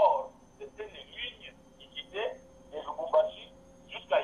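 A person talking continuously over a telephone line, the voice thin and phone-like.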